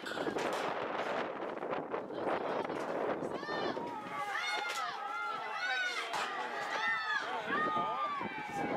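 Sideline spectators at a youth football game shouting and cheering, several high voices yelling over one another, growing from about three and a half seconds in as a ball carrier breaks into the open.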